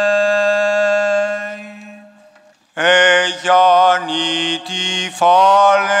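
Eastern Orthodox liturgical chant. A long held note over a steady low drone fades out about two seconds in, and after a brief pause the chanting resumes, the melody moving over the drone.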